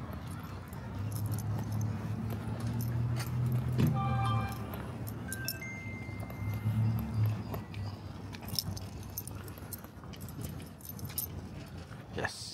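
Light metallic jingling of a small dog's collar tags and leash clip as it walks, over the low hum of a passing vehicle. A short pitched chime is heard about four seconds in, then a thin steady tone lasting about two seconds.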